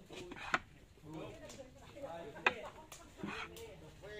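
Two sharp wooden knocks, about two seconds apart, as turned wooden chess pieces are set down on a wooden board, over people talking in low voices.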